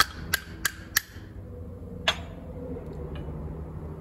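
Sharp taps on a metal pucking die, about three a second, knocking a freshly pressed black powder puck out of the die; the tapping stops about a second in, with one more tap about two seconds in.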